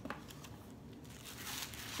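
Faint crinkling and rustling of gift wrapping being handled as a wrapped item is taken out of a parcel, with a small click at the start.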